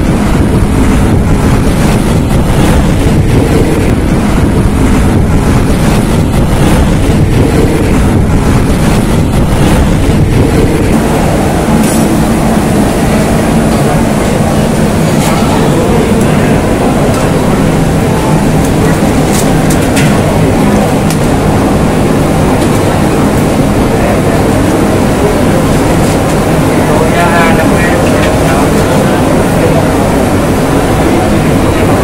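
Steady, loud street-side restaurant ambience: road traffic running past mixed with many people talking at once.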